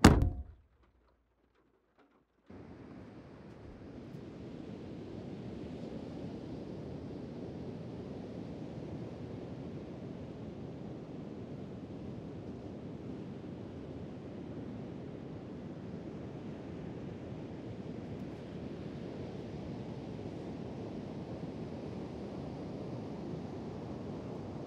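A car's hatchback tailgate slams shut right at the start and dies away, followed by a moment of near silence. From about two and a half seconds in comes a steady, even wash of sea surf and wind on an open beach.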